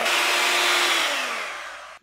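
Electric hand mixer running at speed, its beaters whirring through softened butter and heavy cream. In the last second the motor's pitch drops and the sound fades as it winds down.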